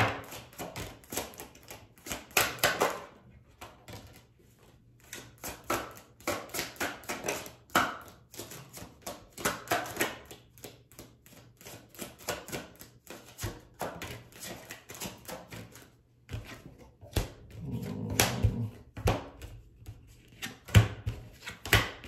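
A deck of tarot cards being shuffled by hand: long runs of quick card clicks, easing off briefly a couple of times, with a few louder knocks near the end.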